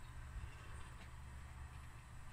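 Quiet room tone: a faint steady low hum with no distinct events.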